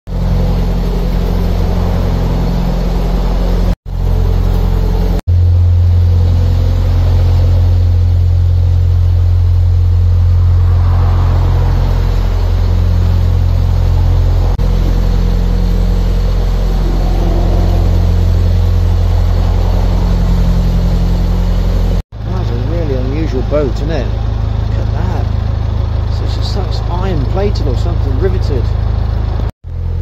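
Narrowboat's engine running steadily under way: a loud, even low drone, broken by a few sudden short gaps.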